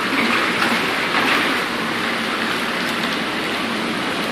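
Marquis Epic hot tub jets running with both jet pumps on, the water churning and bubbling in a steady rush.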